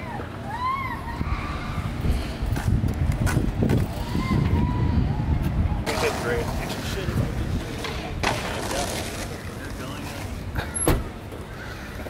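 Indistinct voices of people talking nearby, over a steady low rumble, with one sharp click near the end.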